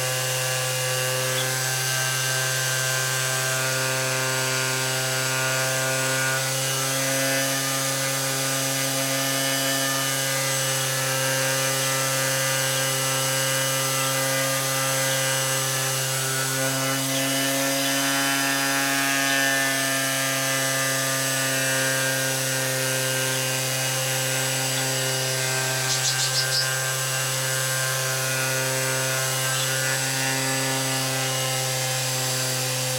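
Electric orbital sander with a round pad running steadily while sanding a wooden panel patched with wood filler, a constant motor hum with the rasp of sandpaper on wood. A short cluster of light clicks comes near the end.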